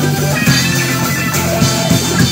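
Rock band playing an instrumental passage: guitar over a drum kit, with no singing.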